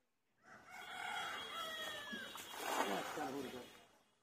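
A rooster crowing once, a single call of about three seconds that falls in pitch partway through.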